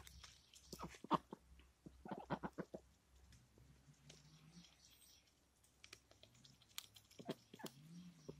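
Pekin ducks feeding, their bills pecking and snapping at feed on gravelly ground: faint scattered clicks, with a quick run of them about two seconds in and another cluster near the end.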